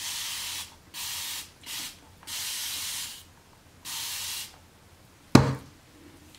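A hand-pump spray bottle spritzing hair in five separate hissing bursts of different lengths, soaking the hair before a deep conditioner goes on. About five and a half seconds in comes a single sharp thump, the loudest sound.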